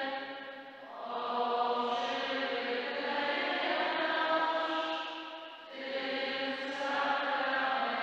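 Slow church music of long held chords, in phrases about five seconds long, dipping briefly about a second in and again near six seconds.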